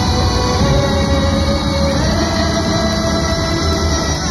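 Large live ensemble of many instruments holding a sustained chord over a steady low drone; the top held note steps up in pitch about two seconds in.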